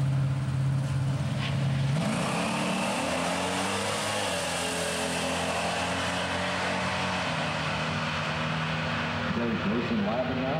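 Two drag-racing vehicles, a pickup truck and a car, launch off the start line. Their engines are held at steady revs, rise sharply about two seconds in, then carry on down the track, stepping in pitch at the gear changes.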